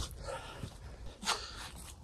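A man breathing hard through his mouth, a few heavy breaths out of breath from power-walking up a steep climb.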